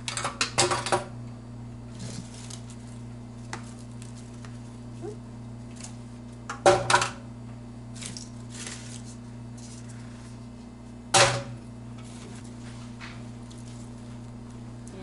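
Small decorative gourds dropped into a tall glass cylinder vase, knocking against the glass and each other with a brief ringing of the glass. This happens in three clusters: at the very start, about seven seconds in, and about eleven seconds in. Fainter knocks and rustles from rummaging through a plastic tub of gourds fall in between.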